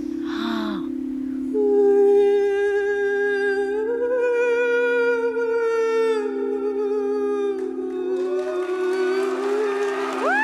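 Tuned singing bowls ringing as a steady low drone. About a second and a half in, a wordless voice joins and holds one long note that steps up slightly near the middle, then moves to a new note near the end.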